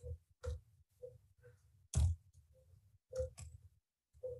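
Computer keyboard keystrokes: about eight separate, uneven key taps, roughly two a second, with one louder keystroke about two seconds in.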